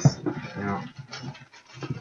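Clear plastic shrink wrap being torn and peeled off a cardboard trading-card box, crinkling in short irregular crackles, under a faint mumbling voice.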